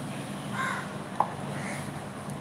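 A bird calling in the background, two short calls about a second apart, over a steady low hum. There is one sharp click a little past the middle.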